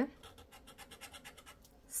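A scratch-off lottery card being scratched with a thin metal pick: faint, quick, even scraping strokes across the coating.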